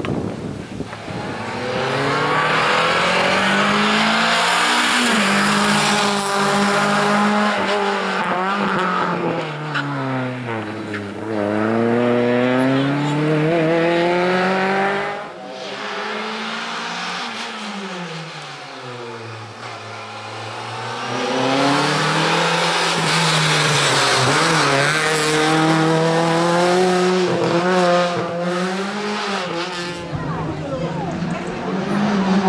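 Small hatchback race car's engine revving hard, its pitch climbing and dropping again and again as it shifts gear and lifts off for the cones. The sound breaks off sharply about halfway and picks up again lower, then climbs back to high revs.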